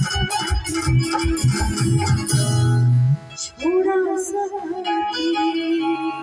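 Live stage band music: a dholak-led percussion beat with electronic keyboard chords, the beat cutting off about three seconds in. The keyboard carries on alone in held, organ-like notes.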